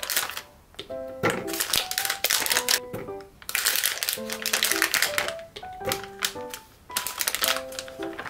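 Plastic pouch crinkling and strawberries dropping and clattering into a plastic blender bottle, in several bursts of rustling and clicks, over soft background music.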